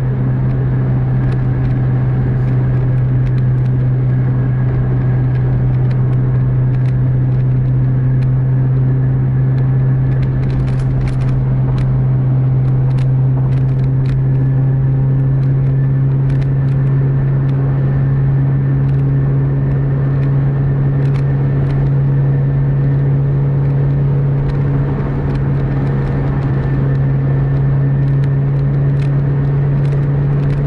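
Bus engine and road noise heard inside the cabin while cruising on a highway at about 120–140 km/h: a steady, loud low drone with a few faint ticks and rattles.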